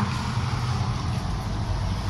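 Steady low rumble with an even hiss: outdoor background noise holding at a constant level.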